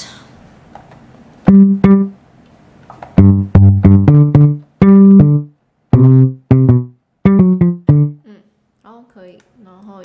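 Electric-bass sound from a software instrument in Logic Pro, played on a small MIDI keyboard: a short syncopated bass line of low plucked notes, each starting sharply and dying away quickly, broken by brief gaps and ending about eight seconds in.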